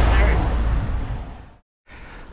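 Wind buffeting the microphone of a camera on a moving bicycle: a loud low rumbling noise that fades away about a second and a half in, then cuts off suddenly to silence.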